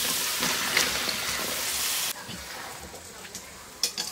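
Sliced potatoes and banana stem dropped into hot oil in a wok, sizzling loudly. About halfway through the sizzle drops suddenly to a quieter, steady frying, with a sharp clink near the end.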